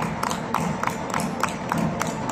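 Folk dancers' feet stamping and stepping on a wooden floor in a quick, even rhythm of about four strikes a second, over folk dance music.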